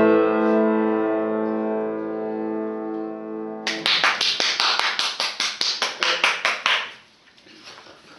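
Upright piano: a held chord rings and slowly fades. About three and a half seconds in, it gives way to a fast, even run of sharp, bright strikes on the keys, about five a second, which stops abruptly near the seven-second mark.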